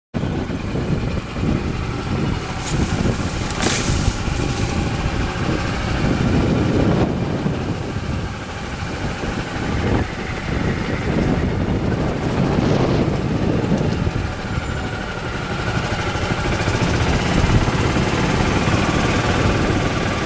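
Open golf cart driving along a paved path: a steady, irregular running rumble with a couple of sharp clatters about three and four seconds in.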